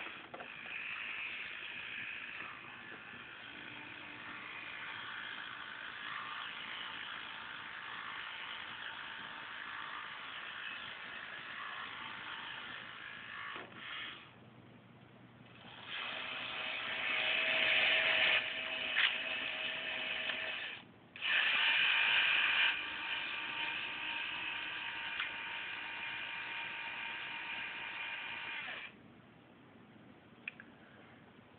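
Small electric gear motors of a 1:55-scale remote-control Gottwald crane model running with a whirring gear whine. They stop for about two seconds near the middle, then run louder, cut out briefly, and stop shortly before the end.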